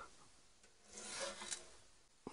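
Steel door of a small camp wood stove being swung shut: a soft scraping rub about a second in, ending in a light tap.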